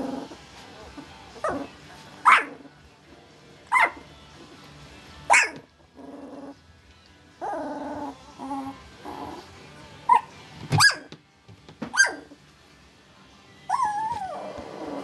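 A 14-day-old puppy gives about five sharp, high-pitched barks that break off quickly. Between them come lower, longer purr-like grunts.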